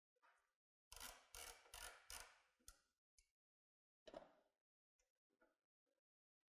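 Faint clicking of a ratchet socket wrench loosening a 13 mm bolt: a quick run of about half a dozen clicks about a second in, then a few single clicks and ticks.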